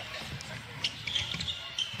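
Basketball dribbled on a hardwood court, with faint knocks and a few short high squeaks from play on the floor, heard through a broadcast feed.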